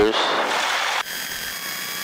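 Steady hiss over the light aircraft's headset intercom that cuts off suddenly about a second in, leaving a fainter hiss with thin high electrical whines.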